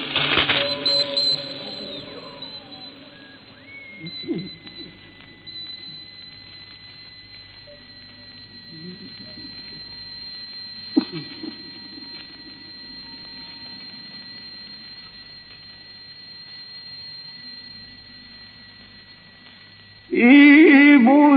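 A pause in a live recording of a Quran recitation: the audience's voices fade over the first couple of seconds, leaving faint murmuring and room noise. A steady thin high tone from the old recording runs under it, and there is one sharp click about eleven seconds in.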